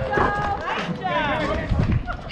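Several people's voices talking and calling out across an open ballfield, overlapping one another, with a higher-pitched call about halfway through.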